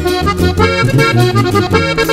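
Instrumental passage of a Mexican norteño song: button accordion playing a fast run of melody notes over tuba bass notes and strummed guitar, with no singing.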